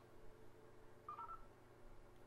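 US Robotics Courier modem dialing through its speaker: faint touch-tone (DTMF) dialing, with a short two-tone beep about a second in.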